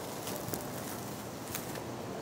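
Rustling and light crackling of dry grass and fallen leaves being moved through, with a couple of faint sharp ticks.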